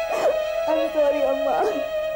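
A young woman sobbing, with two wavering crying wails, over steady, sad background music that holds a long note.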